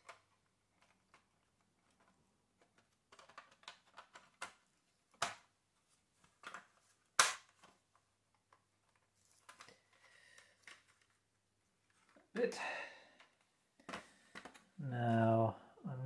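Scattered plastic clicks and knocks from a Peugeot Boxer instrument cluster's circuit board and plastic housing being handled and pressed together by hand, with a sharp snap about seven seconds in.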